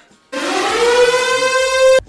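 Siren-like sound effect marking a player's elimination: one long, loud tone, rising slightly in pitch, that starts about a third of a second in and cuts off abruptly.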